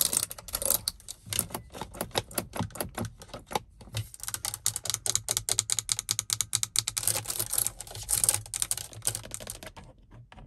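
Long acrylic fingernails rapidly tapping and scratching on a car's plastic interior trim: first the dashboard air-vent slats, then the hazard and traction-control buttons and dial. The clicks come in a fast, uneven stream like typing, with a low steady hum underneath through the middle seconds.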